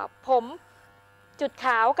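Corded electric hair clipper running with a faint steady hum as it cuts hair over a comb.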